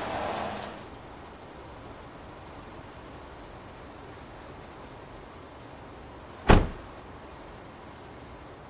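A car coming to a stop, its noise dying away within the first second. About six and a half seconds in, a car door is shut with a single sharp slam.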